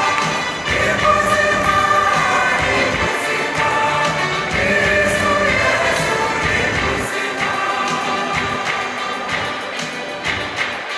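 Large mixed choir singing a gospel song in parts, sustained sung notes with the low bass thinning out about seven seconds in.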